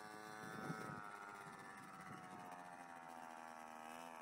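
Faint motor whine of a children's mini quad bike, a steady pitched drone with many overtones that slowly falls in pitch and rises again near the end as the bike slows and speeds up.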